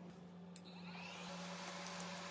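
Air blower nozzle switching on and blowing steadily onto the cracked back glass of an iPhone 12 Pro Max. The rushing sound rises in about half a second in, and a few small clicks of glass fragments come near the end.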